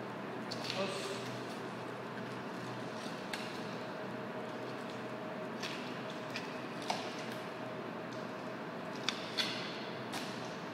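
Filleting knife cutting along a snapper's backbone on a plastic cutting board: a handful of short scrapes and taps scattered over a steady room hum.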